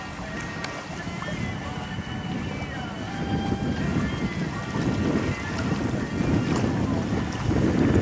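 Wind buffeting the microphone and water rushing along the hull of a small sailing boat under way, growing louder toward the end, with music playing underneath.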